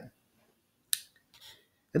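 A single sharp click about a second in, from a computer pointer button clicking to advance a slide, followed by a fainter brief sound about half a second later.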